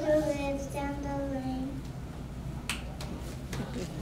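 A child's voice drawing out one long 'baa' like a sheep's bleat, fading out a little under two seconds in. A few light clicks and knocks follow.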